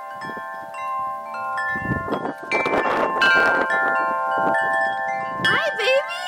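Wind chimes ringing, many metal tones struck at irregular moments and overlapping as they ring on, with some wind noise. Just before the end, a short animal cry rises and falls in pitch.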